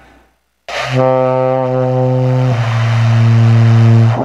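Saxophone playing a two-note descending step, re down to do, each note held about one and a half seconds after a breathy attack. It demonstrates the 're-yo-do' drop, where jaw and lips open so the pitch falls cleanly onto do.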